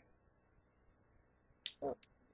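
Quiet room tone, then a single short, sharp click near the end, followed at once by the start of a woman's speech.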